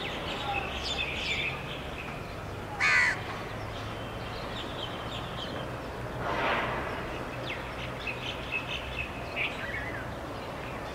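Birds calling: small birds chirping throughout, with a short loud call about three seconds in and a longer call about six and a half seconds in, over a steady low hum.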